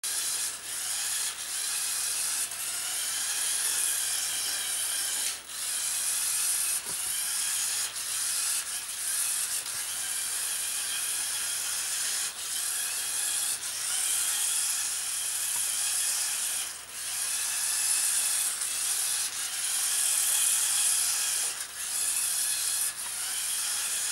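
Battery-powered toy motor and plastic gear train of a motorized building-block spider (Lepin 24010, a Lego Monster Dino clone) running steadily as it walks, with brief dips every few seconds.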